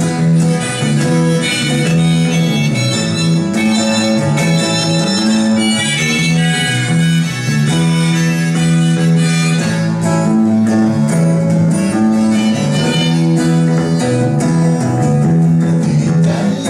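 Live instrumental passage: acoustic guitar and electric bass playing together, with a melody of held notes moving step by step on top.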